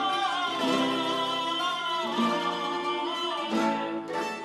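Live music from a male choir singing to an ensemble of acoustic guitars and other plucked strings, with a long held, wavering sung note.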